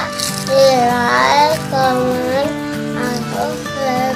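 Background music: a song with a singing voice gliding up and down over a steady guitar accompaniment.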